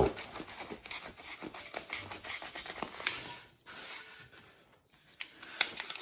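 A sharp knife blade sawing and scraping through rigid foam board as a chunk is worked loose, giving a rapid crackling scratch that stops about three and a half seconds in. A fainter scratch follows briefly before it goes nearly silent.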